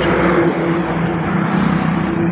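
A motor vehicle engine running steadily at an even pitch close by, over a constant rush of traffic noise.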